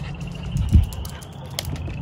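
Outdoor ambience: wind rumble on the microphone with a dull thump under a second in and a few light clicks. Behind it runs a faint steady high-pitched chorus of frogs.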